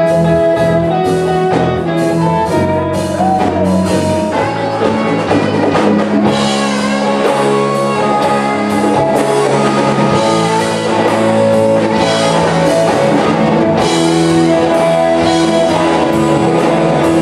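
Live blues-funk band playing an instrumental passage: a saxophone plays the lead line over electric guitars, bass, drum kit and congas.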